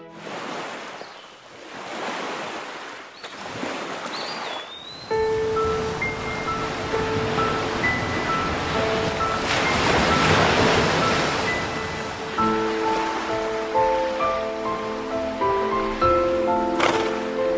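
Ocean surf, waves breaking and washing in rising and falling swells. Piano music comes in about five seconds in and plays on over the surf.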